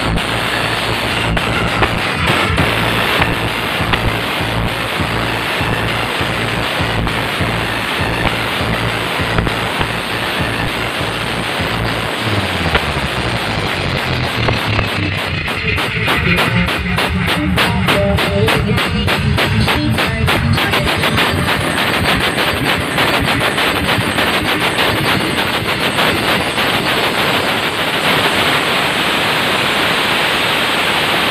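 Very loud, distorted dance music from the Kartika truck-mounted wall of speaker cabinets, heavy in the bass. Around the middle a bass sweep slides downward, then a rapid run of fast, hammering beats follows.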